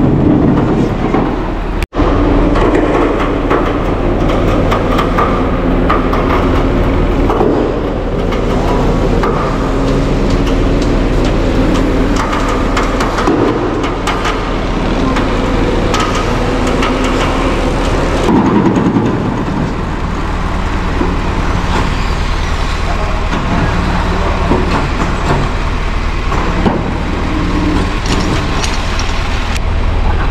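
Diesel engine of a slide-bed tow truck running steadily under load, driving the hydraulic winch that drags a derelict Ford tractor up the tilted deck. The sound cuts out for an instant about two seconds in.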